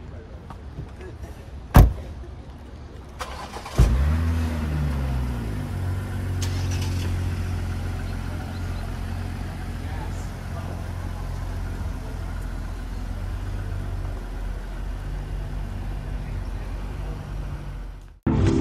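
A car door shuts about two seconds in. A couple of seconds later a BMW X5 SUV's engine starts, its pitch dropping as it settles to a steady idle, and it keeps running as the SUV pulls out of its space.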